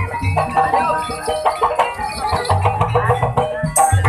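Banyumas ebeg gamelan music: struck pitched percussion playing a busy melody over a pulsing low drum beat. The sound jumps louder and brighter just before the end.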